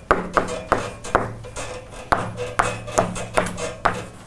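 Chalk writing on a blackboard: a quick run of about a dozen sharp taps and short scrapes, some with a brief pitched squeak.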